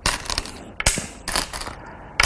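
Go stones clattering as a hand takes stones from the bowl and sets them on the board, with one sharp click of a stone placed a little under a second in.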